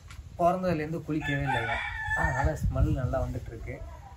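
A rooster crowing once, a long high call, over a man talking.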